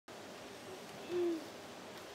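A single short, low hoot about a second in, dipping slightly in pitch, over faint outdoor background noise.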